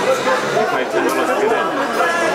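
Several people chatting at once, their overlapping voices too mixed to make out words.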